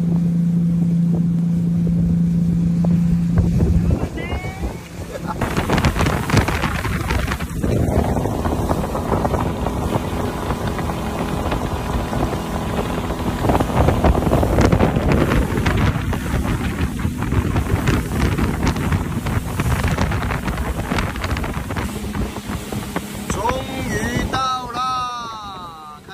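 Boat engine running under way, with water rushing past the hull and wind on the microphone. A steady low drone in the first few seconds gives way to rougher rushing noise from about five seconds in.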